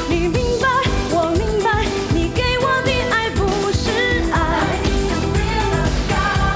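A woman singing a Mandarin pop song over dance-pop backing music with a steady beat, her held notes wavering with vibrato.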